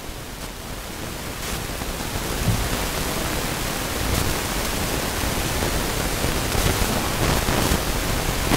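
Steady hiss of background noise, growing a little louder over the first couple of seconds, with a few faint ticks or rustles.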